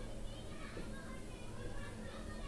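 Faint background voices of children, heard over a steady hiss.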